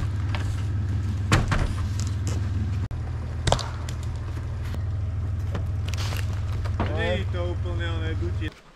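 Toyota 4Runner's engine idling steadily, with a couple of sharp knocks about a second and three and a half seconds in, and a person's voice calling out near the end.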